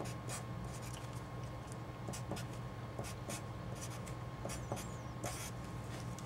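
Felt-tip marker writing on paper: a string of short, separate scratching strokes as an equation's terms are written out, over a faint steady hum.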